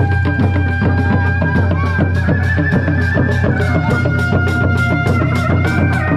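Loud live Sundanese kuda lumping procession music: dogdog hand drums and other drums keep a fast, steady beat under a long, slowly wavering reed melody from a tarompet, with heavy bass from a loudspeaker rig.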